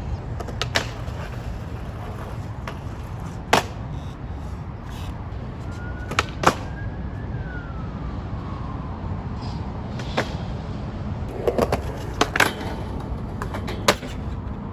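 Skateboard on concrete: sharp clacks of the board's tail and wheels striking the ground, a dozen or so spread irregularly and bunched near the end, over a steady low rumble.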